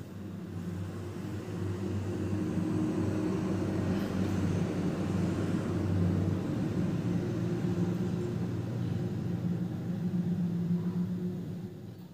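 A steady, low mechanical rumble with a hum of several held low tones, swelling slightly over the first couple of seconds and then holding steady.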